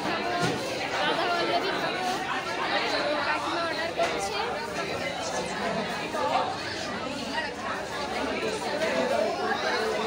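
Indistinct chatter of many people talking at once in a crowded shop, steady throughout.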